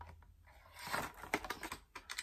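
Cardboard packaging and a plastic tray of gel polish bottles being handled: a run of light clicks and rustles starting about half a second in.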